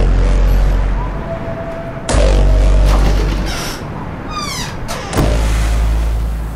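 Three deep trailer-style boom hits, each a sudden impact followed by a low rumble that dies away over a second or so, spaced about two to three seconds apart. Before the third hit, a falling whoosh sweeps down in pitch.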